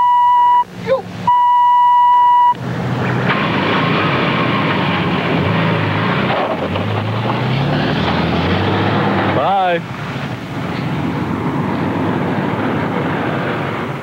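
A steady censor bleep tone, broken once, blanks out the motorist's swearing for the first two and a half seconds. After that comes the steady rushing noise of highway traffic, with vehicles passing the stopped cars.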